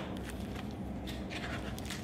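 Faint rustling and small clicks of a hardcover picture book being handled and opened, over a steady low room hum.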